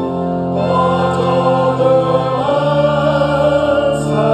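Congregation singing a closing hymn together over long, sustained accompanying chords.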